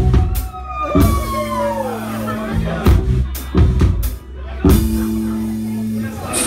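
Live rock band playing: heavy drum-kit hits about once a second over held bass guitar notes, with higher notes gliding downward in pitch over the first couple of seconds.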